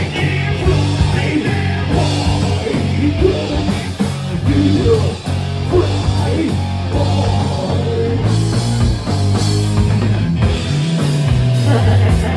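Live rock band playing loud: electric guitar and drum kit, with vocals over them.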